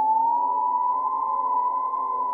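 A single long held musical note, gliding up slightly at its start and then steady, with lower tones sounding beneath it.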